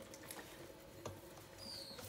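Faint patter of white powder sprinkled from a small bowl onto whole tilapia in a stainless steel bowl, with a few light ticks. A brief high squeak sounds near the end.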